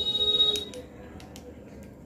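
Makeup brush stirring cream foundation in a small glass bowl, with a few light clicks against the glass. It opens with a brief high squeal, which fades out about two-thirds of a second in.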